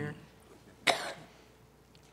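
A single short cough about a second in, sharp and loud against the quiet of the meeting room.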